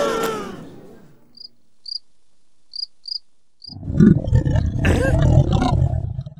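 Cartoon sound effects: a few sparse cricket chirps sound in an otherwise quiet pause, then a loud, low, gravelly straining noise starts about two thirds of the way in as the stick figure strains on the toilet.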